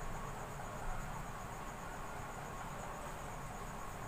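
Faint steady background noise with a thin, high-pitched pulsing trill running throughout.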